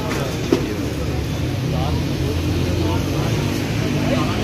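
Busy street ambience: several voices chattering in the background over a steady low rumble of traffic, with one sharp click about half a second in.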